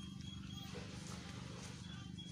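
A faint, steady low hum with a fast, even pulse, with a few short, faint high chirps over it.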